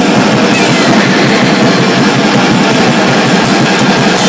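Live rock band playing loud: electric guitar and drum kit, with fast, steady cymbal hits, about four or five a second, over a dense wall of guitar.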